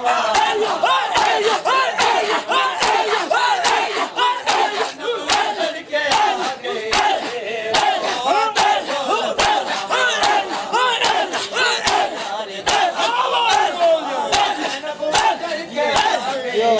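Crowd of men chanting and shouting together while beating their chests with open hands in matam, sharp slaps landing about twice a second over the massed voices.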